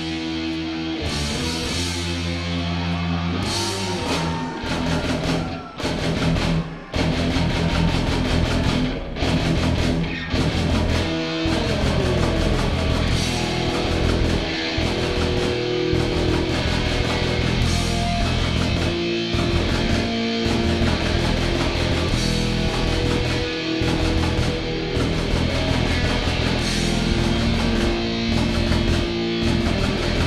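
A rock band playing live, with guitar, bass and drums. After a few seconds of held notes broken by two short stops, the full band comes in with a steady driving beat.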